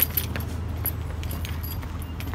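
Light metallic jingling and clinking, small metal pieces knocking together in irregular little clicks, over a steady low hum.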